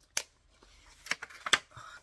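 Thin paper being handled by hand, a few sharp crackles and clicks as a small paper pocket is opened, the loudest about one and a half seconds in.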